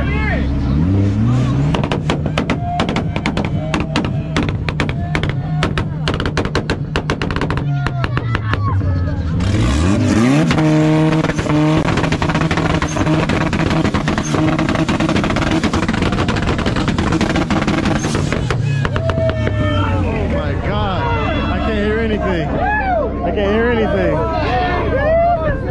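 A car engine on a two-step launch limiter, cracking off a fast string of exhaust pops and bangs. About ten seconds in it revs up sharply and is held at the limiter, loud and harsh, for about eight seconds before it drops away. Crowd voices carry underneath.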